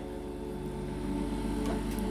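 Steady mechanical hum of a running draught-beer cooler, with faint voices in the background.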